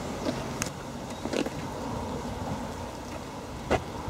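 Steady low rumble of road traffic in the open air, broken by a few short sharp knocks: one just after the start, a pair about a second and a half in, and a louder one near the end.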